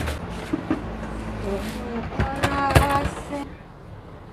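A person's voice in short snatches, louder a little past halfway, with a few light knocks.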